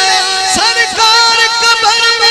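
Live qawwali music: a harmonium holding a steady melody under a singing voice with gliding ornaments, and a hand-drum stroke about half a second in.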